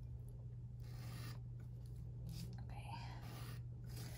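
Faint scraping and rubbing of a craft knife cutting a paper sticker on a plastic cutting mat, over a steady low hum.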